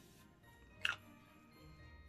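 A setting-spray mist bottle gives one short spritz, a brief hiss just before a second in, over faint background music.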